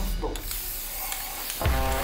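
Aerosol spray-paint can hissing as paint is sprayed onto a pillow in one long spray of about a second, followed by a low thump near the end.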